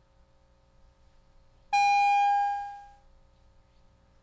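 Division bell calling members in for a recorded vote: a single loud bell tone rich in overtones strikes suddenly a little under two seconds in, holds briefly, then fades out over about a second, over a faint steady hum of the chamber.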